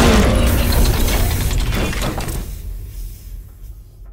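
Logo-animation sound effect: a loud hit with a deep rumble and dense rattling clicks, fading away over about three seconds.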